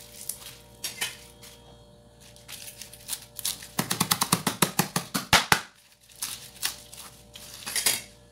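Kitchen knife chopping guava leaves on a cutting board: a few scattered taps, then a quick run of chops, several a second, for about two seconds in the middle.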